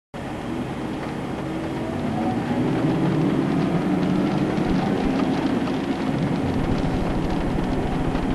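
Car driving at highway speed, heard from inside the cabin: steady tyre and engine noise that builds slightly, with a fast low fluttering coming in about six and a half seconds in.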